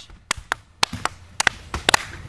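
About eight sharp, short smacks at uneven intervals during a backyard wrestling match.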